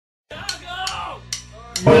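Drummer clicking sticks four times as a count-in, about 0.4 s apart, while a voice calls out and laughs over it; the full powerviolence band then crashes in loudly with drums and distorted guitars right at the end.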